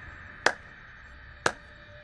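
A slow clap: two single sharp hand claps about a second apart, over faint background music.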